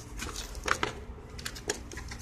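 A few light clicks and taps of hard plastic as a pen-type pH meter is handled and lifted out of its plastic case.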